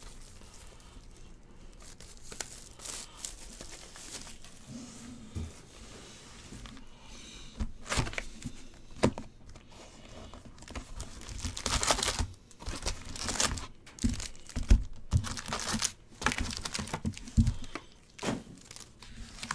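Plastic wrap and cardboard crinkling and tearing as a trading-card hobby box is unwrapped and opened, then foil card packs rustling as they are lifted out. The crinkles get louder and busier in the second half.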